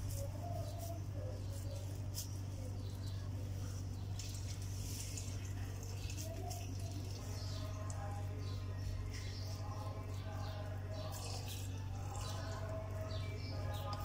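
Faint, soft squishing of oiled hands pressing a moist rice and vegetable kabab mixture into a patty, under a steady low hum. Faint bird-like chirps come and go, and a faint distant voice is heard in the second half.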